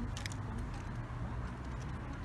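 Faint rustling and a few light clicks near the start as a cloth-bagged motorcycle helmet is wiggled into a motorcycle's top trunk, over a low steady background rumble.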